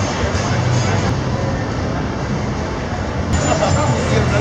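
Busy street ambience: cars driving through, with music playing and a hubbub of voices.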